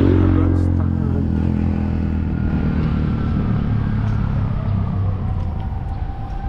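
Traffic on a city road: a motor vehicle's engine running close by, loudest at the start and fading as it moves away. A faint pitched tone comes in near the end.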